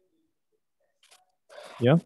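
Near silence for about a second, then a few faint short noises and a voice saying "yeah" near the end.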